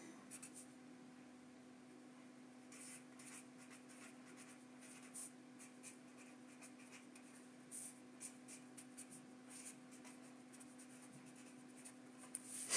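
Near silence with faint, scattered scratching strokes of handwriting over a steady low hum.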